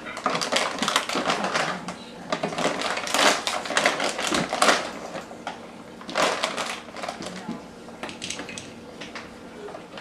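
Crinkly plastic raisin pouch rustling as a measuring scoop is dug in, with raisins tipped into a glass jar in a run of quick clicks and patters.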